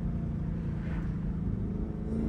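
Chevrolet Camaro ZL1 1LE's supercharged 6.2-litre V8 cruising at steady low revs, heard from inside the cabin as a low, even engine drone with road noise.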